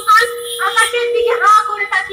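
A group of performers singing a chant through stage microphones, over a steady humming tone.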